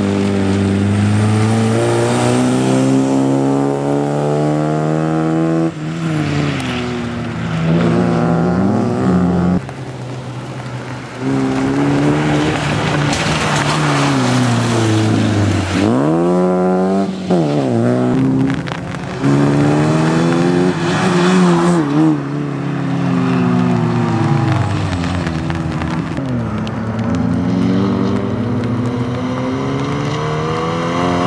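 Opel Corsa B competition car's engine revving hard, its pitch climbing through each gear and dropping at each shift or lift off the throttle, with a quick dip and sharp rev-up about halfway through.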